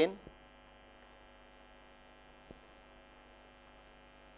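Faint steady electrical hum, a stack of evenly spaced tones like mains hum in the recording, with one faint click about two and a half seconds in.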